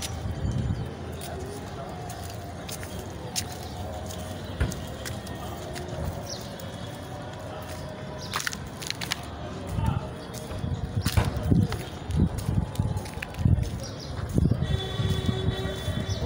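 Street background with faint distant voices and music. From about ten seconds in, irregular low rumbling knocks on the microphone are the loudest sound.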